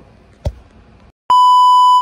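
A short knock, then a brief silence, then a loud steady test-tone beep, the reference tone that goes with TV test bars, starting about a second and a quarter in and holding without change.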